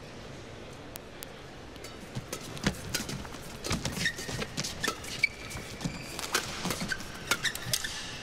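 Badminton rally in an arena: rackets striking the shuttlecock in quick, sharp hits, with short squeaks of shoes on the court mat, starting about two seconds in after a low steady hum of the hall.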